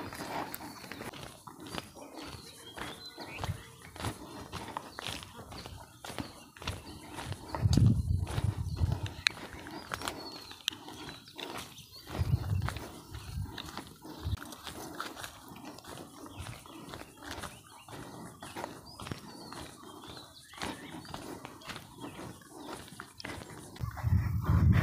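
Footsteps crunching irregularly along a dry dirt and leaf-litter forest path, with faint bird chirps. Two brief low rumbles stand out, about eight and twelve seconds in.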